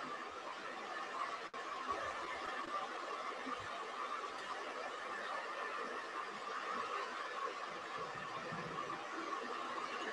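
Faint steady hiss and room tone of an open microphone on a video call, with a brief dropout about a second and a half in.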